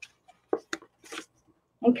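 A few short, soft crinkles of a folded paper plate being opened up by hand.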